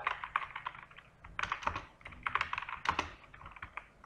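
Typing on a computer keyboard: a fast, uneven run of key clicks broken by short pauses.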